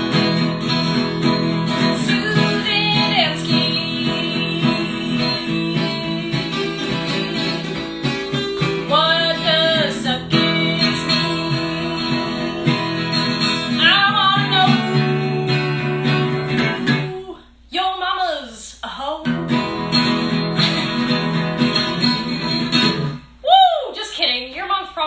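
Acoustic guitar strummed while voices sing a short made-up song, personalised with a viewer's name. About two-thirds of the way in the guitar stops for a moment while the voice carries on alone, then comes back.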